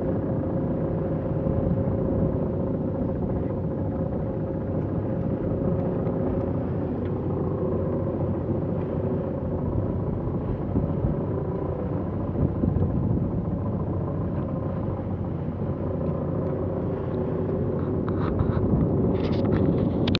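Steady low rumble of a sailing yacht under way at sea, with water rushing along the hull and a faint steady hum running through it.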